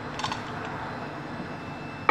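Steady background noise with a faint light click just after the start.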